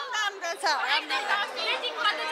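Several women's voices talking over one another in excited, overlapping chatter, with one voice sweeping up and down in pitch about two-thirds of a second in.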